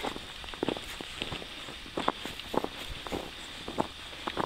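Footsteps of a hiker walking on a packed-snow trail, roughly two steps a second, each step a short crunch in the snow.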